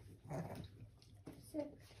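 A dog giving a short vocal sound about half a second in, during a nail-clipping session.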